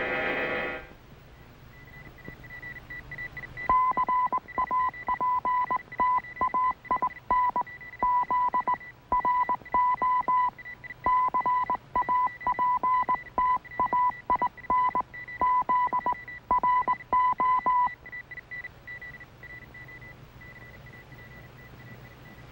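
Radio-transmission sound effect: a beep keyed on and off in short and long pieces like Morse code, over a steady higher whistle-like tone. The keyed beeping stops about four seconds before the steady tone ends.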